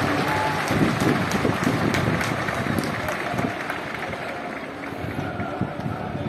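Large outdoor crowd applauding, with many voices calling out, easing off slightly toward the end.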